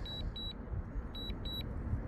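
DJI Mavic Air 2 remote controller sounding its alert: pairs of short, high beeps, two pairs about a second apart, while the drone flies home in strong wind. A low rumble of outdoor noise lies underneath.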